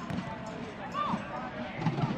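Soccer match sound from the pitch: a steady hum of the crowd, a single player's shout about a second in, and a sharp thud of the ball being kicked near the end.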